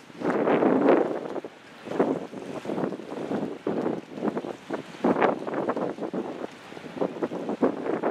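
Wind buffeting the camera microphone in irregular gusts, rising and falling every second or so, with short sharp crackles between the gusts.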